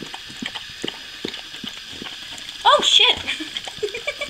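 A mother dog licking her newborn puppy clean after birth: a run of small wet licking and smacking sounds. About three-quarters of the way in comes a short high-pitched cry that rises and falls.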